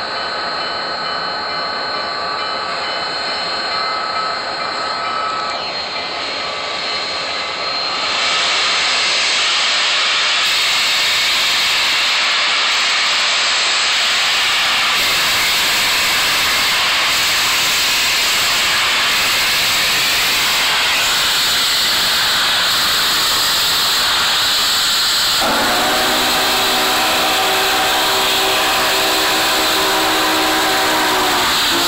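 Union Pacific No. 844, a 4-8-4 steam locomotive, hisses loudly as steam blows from its open cylinder cocks while it gets under way. The hiss jumps up about a quarter of the way in and stays steady. Near the end a chime whistle sounds a held chord over the hiss.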